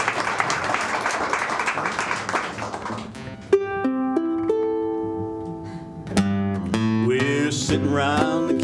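Audience applause for about three seconds, then a ukulele and an acoustic guitar start a song's intro. Plucked chords ring out, and a stronger strum comes about six seconds in.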